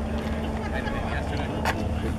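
People chatting in the background over a steady low rumble, with a short sharp click near the end.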